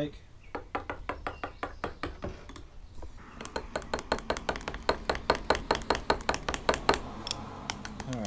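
A spoon stirring liquid plastisol in a glass measuring cup, clinking against the glass in quick strokes of about four to five a second. The strokes grow louder about three seconds in and stop shortly before the end. This is mixing a drop of colourant into the plastic.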